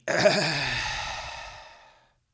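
A man's long sigh, voiced at the start and fading out over about two seconds.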